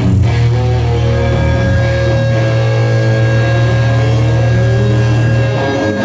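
Live rock band playing loud through a club PA: distorted electric guitars and bass holding long, steady low notes.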